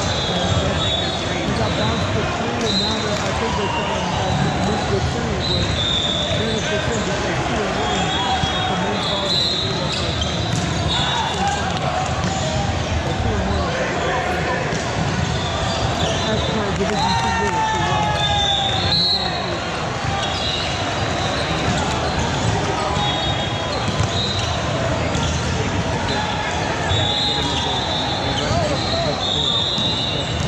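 The steady din of a busy indoor volleyball tournament hall: many voices talking and calling out, volleyballs being hit and bouncing on hardwood courts, and short high sneaker squeaks, all echoing in the large hall.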